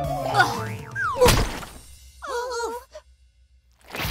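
Cartoon slapstick sound effects: a quick falling glide and a sharp thud about a second in, then a short wobbly, descending boing.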